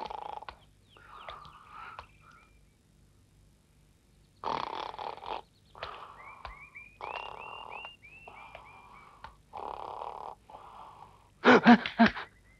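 Animal calls: a run of short rising chirps, about three a second, among half-second bursts of rough, noisy calls.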